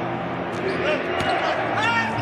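Basketball being dribbled on a hardwood court, with a few bounces heard over the steady hum of the arena.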